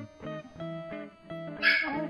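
A dog barks near the end, the loudest sound here, over light background music of plucked guitar notes.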